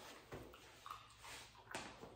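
Faint handling and movement sounds of a puppy and its trainer close by: soft rustles with a few light clicks, the sharpest shortly before the end.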